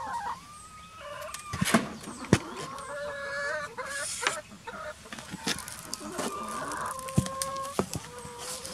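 A flock of hens clucking and calling, with several drawn-out, held calls one after another, and a few sharp knocks mixed in.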